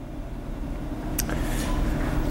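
Low background rumble with a faint steady hum, slowly growing louder, and a single click about a second in.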